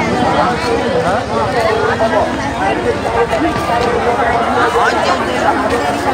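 A dense crowd talking at once: many overlapping voices in a steady babble, with no single voice standing out.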